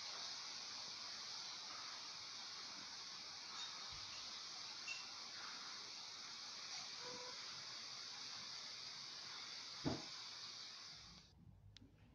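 Steady, fairly high-pitched hiss of background noise, with one short dull thump about ten seconds in; the hiss cuts off suddenly about a second later.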